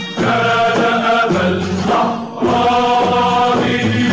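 Music: a choir singing an Arabic patriotic song in long held notes, in two phrases with a short break about two seconds in.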